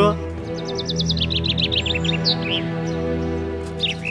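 Small birds chirping in a quick run of short, high chirps over steady background music with sustained low notes. The chirping starts about half a second in and lasts about two seconds, and a few more chirps come near the end.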